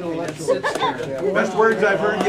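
Indistinct, overlapping talk among several people in a meeting room.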